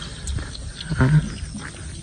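Wind rumbling on the microphone, a steady low buffeting, with one short spoken word about a second in.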